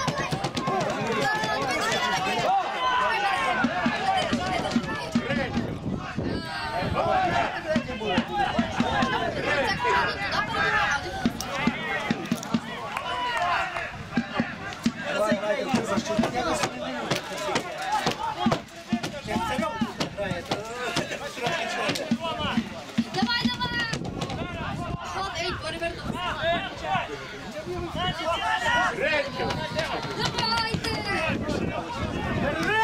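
Several people's voices talking and calling out, overlapping almost without pause.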